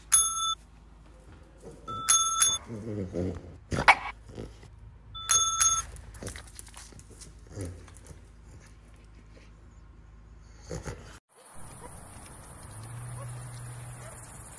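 Chrome desk service bell struck three times, each a short bright ding, as a French bulldog presses it in a bell-choice game. A single sharp knock falls between the second and third rings.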